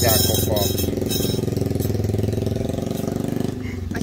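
An engine idling steadily, with a regular even pulse and no change in speed.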